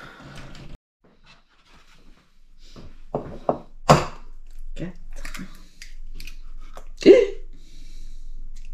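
Eggs being cracked against the edge of a small bowl: a few sharp taps about three to four seconds in, the loudest around the fourth second, and another sharp knock near the end.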